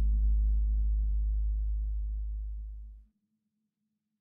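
The last sustained deep bass note of a trap instrumental beat, fading out with its upper layers thinning away, then cutting off suddenly about three seconds in.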